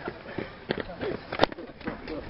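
Faint voices of people talking or calling, with two sharp clicks a little under a second apart, the second louder.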